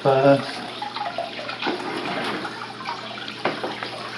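Steady running and splashing water from an aquarium filter, with a short burst of voice at the very start.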